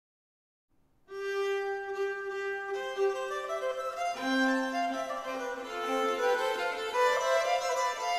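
Treble and tenor viols with organ begin a four-part Renaissance canzona about a second in: a single held line first, then further voices enter one after another, the lower one last.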